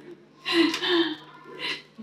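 A short, breathy vocal sound from a person, like a gasp, about half a second in, followed by a quick breath near the end.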